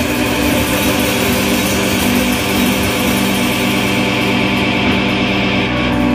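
Distorted electric guitars played live through amplifiers, holding a loud, sustained droning chord with no drum hits.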